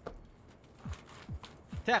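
A man's voice: a few short, low vocal sounds falling in pitch, then a spoken word near the end.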